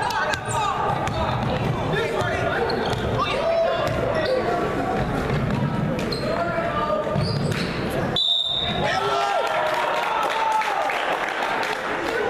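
A basketball being dribbled on a hardwood gym floor, with players' and spectators' voices echoing in the hall throughout. About two-thirds of the way through, the sound drops out briefly and a short high tone sounds.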